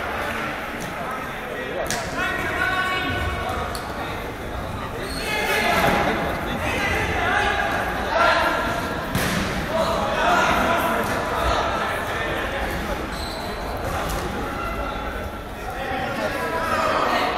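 Players shouting and calling to each other during an indoor football match, with a few sharp thuds of the ball being kicked, all ringing in a large sports hall.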